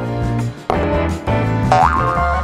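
Background music with a cartoon-style boing sound effect, a short rising tone near the end.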